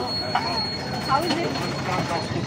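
Busy roadside din: motorbikes and an auto-rickshaw passing close by, with indistinct voices in the background and a thin, steady high whine running through most of it.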